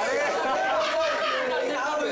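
Several people talking over one another: steady overlapping chatter of voices.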